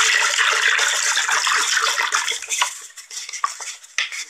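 Spray bottle sprayed rapidly and repeatedly, making a dense hiss of mist that thins out about two and a half seconds in to scattered short clicks and spritzes.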